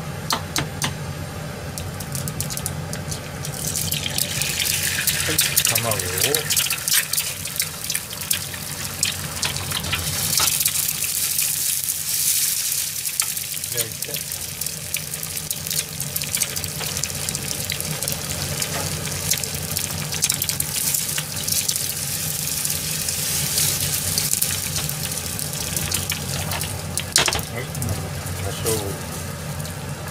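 Eggs frying in hot oil in a small frying pan on a gas hob: a sizzle with spitting crackles that builds a few seconds in and is loudest around the middle.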